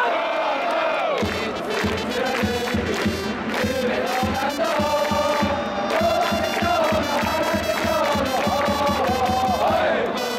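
Baseball cheering section's trumpets and drum leading the crowd in a chanted batter's fight song, with a steady drumbeat starting about a second in.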